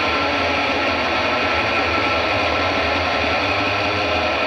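A steady, dense, noisy drone from a distorted guitar rock track, with no clear beat.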